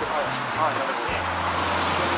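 Indistinct background voices and music, with a steady low hum starting about a second in, over constant street noise.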